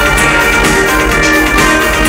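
Dark wave band playing live, heard from within the crowd: loud electronic music with high held synthesizer notes over a steady, pounding low beat.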